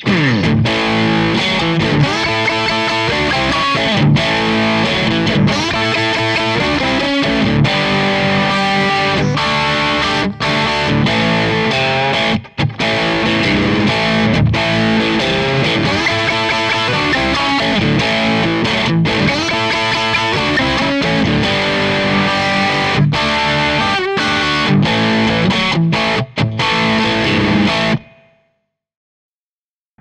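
Electric guitar played through the Hotone Xtomp pedal's Smooth Dist distortion model, a continuous distorted passage that stops about two seconds before the end.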